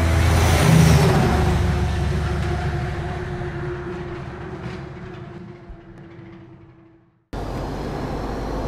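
The tail of an intro soundtrack: a loud hit about a second in, then a held low tone that fades away over about six seconds. Near the end it cuts abruptly to the steady low hum of a lorry cab on the move.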